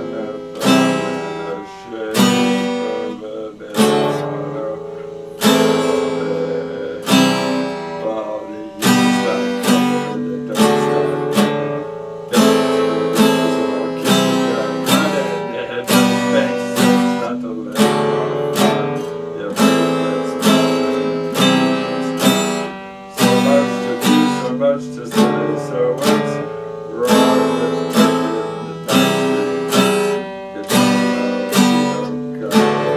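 Epiphone acoustic-electric guitar strummed in a steady rhythm, each chord ringing out and fading before the next strum, the chords changing every second or two.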